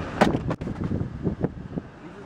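Handling noise from a handheld camera being moved about inside a car: a few sharp knocks in the first half second, then rumbling and rustling that fades away.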